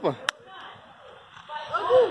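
A man's word ending, then a faint, even outdoor background with a single sharp click about a third of a second in; voices return faintly near the end.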